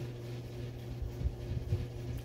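Steady low background hum with a faint steady higher tone above it.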